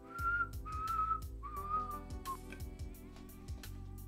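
Whistling: three held notes in the first two seconds, each a little lower than the last, then a fainter note, over background music with a steady beat.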